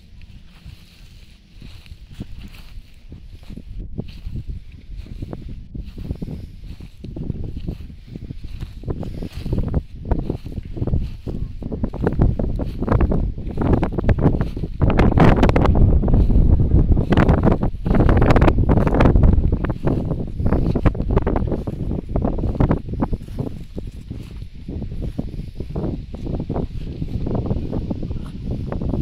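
Wind buffeting the microphone, with irregular rustling and knocking through grass; it builds up to its loudest a little past halfway and then eases off.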